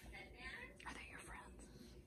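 Faint whispered speech.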